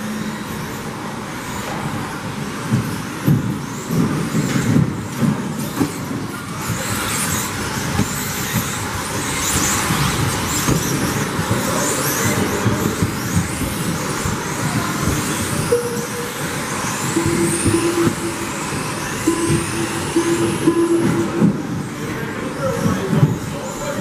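A pack of 1/10-scale electric 2WD off-road buggies racing on an indoor carpet track. Their 17.5-turn brushless motors whine up and down in pitch as they accelerate and brake, over tyre noise and sharp knocks from jumps, landings and contact, with the loudest knocks in the first few seconds. A steady beep-like tone sounds twice past the middle.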